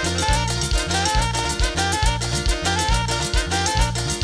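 Live tropical dance band playing at a steady dance beat: a repeating electric-bass line under drums and percussion, with a melody line that slides between notes.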